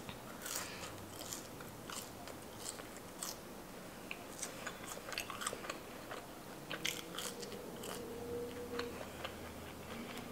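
Close-up mouth sounds of a person biting and chewing Cajun fries: soft, wet clicks and smacks scattered irregularly throughout.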